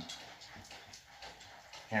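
Marker pen writing on a whiteboard: a run of faint, short strokes as words are written.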